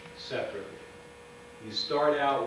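A steady electrical hum at a single pitch, most plainly heard in a pause of about a second between bursts of a man's speech.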